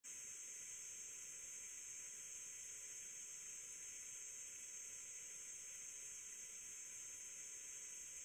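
Faint steady hiss of background noise, with no distinct sound events.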